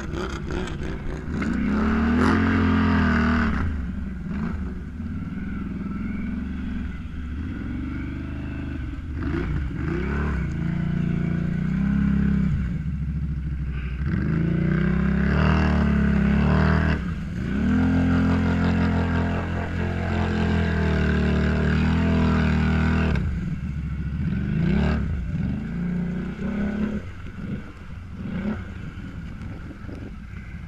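Can-Am ATV engines revving hard in repeated long surges, each rising and then dropping back, as the quads struggle to make headway through deep water and mud.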